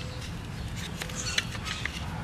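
A few faint, light clicks from handling a plastic recoil starter housing and the cord being worked through it with needle-nose pliers, over steady background noise.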